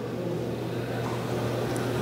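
A steady low hum over even background noise in a large hall, with no change through the pause.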